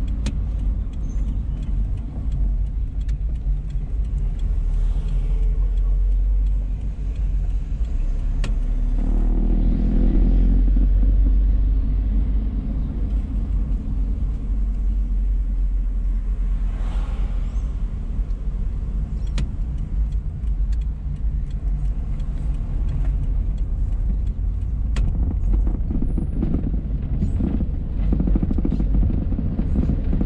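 Car engine and road noise heard from inside the cabin while driving through town streets: a steady low rumble that swells for a couple of seconds about ten seconds in.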